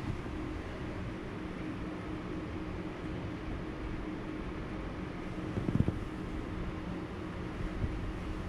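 Steady low background hum of room noise, with one brief bump a little before six seconds in.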